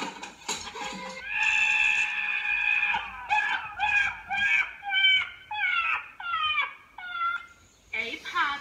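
A goat screaming, played through a laptop's speakers: one long call about a second and a half long, then a quick run of about eight shorter calls, each dropping in pitch at its end.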